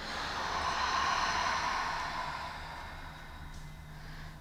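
A long breath let out through the mouth, a breathy hiss that swells over the first second and fades away over about three seconds: the release of a deep breath in breathwork.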